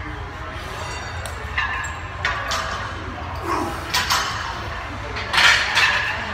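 A loaded barbell clinking and knocking against the squat rack's steel uprights and its own plates as it is walked back and racked: several short knocks, loudest near the end, over a steady low gym hum.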